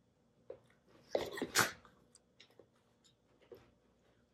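Two Shiba Inu dogs at play: a short breathy burst from one of them, in two quick parts, a little over a second in, followed by light scattered clicks of paws and mouths.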